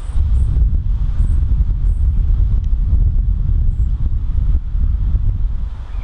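Wind buffeting the camcorder microphone: a loud, gusting low rumble throughout. A few faint, short, high chirps come through over it.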